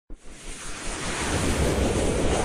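Logo-intro sound effect: a rushing whoosh of noise that swells steadily louder, opening with a brief click.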